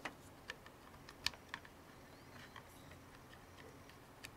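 A few faint, sharp clicks of SATA cable connectors being handled and pushed onto a 2.5-inch hard drive, the sharpest about a second and a quarter in.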